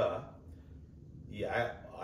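A man speaking in an interview, with a pause of about a second before he goes on.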